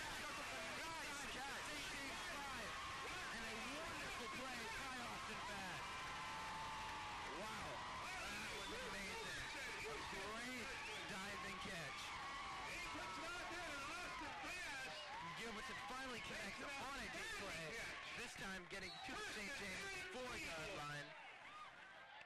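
Football crowd cheering and yelling after a long completed pass, many voices overlapping, dying down near the end.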